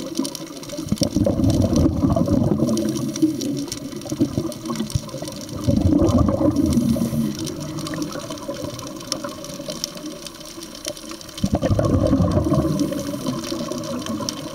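Scuba divers breathing through their regulators underwater: exhaled air bubbling out in gurgling bursts, with three louder stretches spaced several seconds apart.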